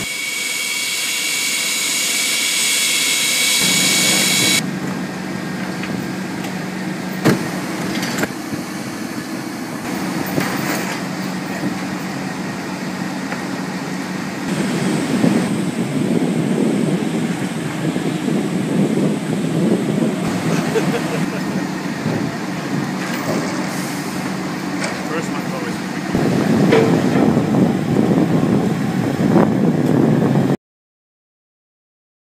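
Airport ground-handling noise in several cut shots: a high steady whine at first, then a steady engine hum under indistinct voices, growing louder near the end.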